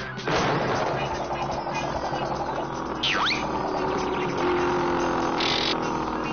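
Cartoon soundtrack of busy orchestral music mixed with sound effects. It turns loud suddenly about a quarter-second in, and a quick whistle-like pitch slide sounds about three seconds in.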